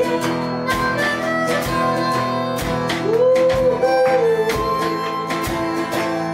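Live band playing: a harmonica melody with bent, sliding notes over a strummed acoustic guitar and a drum-kit beat.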